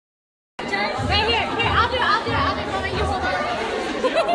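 Several people chattering at once over background music with a steady bass beat, cutting in suddenly about half a second in.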